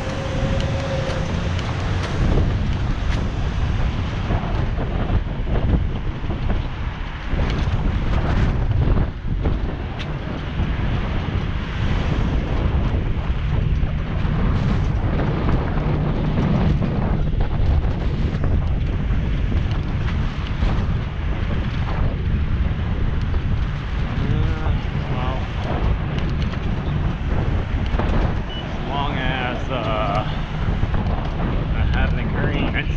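Steady low rush of wind buffeting a GoPro action camera's microphone as a bicycle rides along city streets, with car traffic around.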